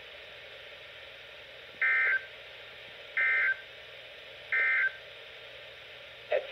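Three short bursts of warbling digital SAME data tones from a NOAA Weather Radio broadcast, played through a Midland WR-300 weather radio's speaker over a steady radio hiss. This is the Emergency Alert System end-of-message code that closes the special marine warning.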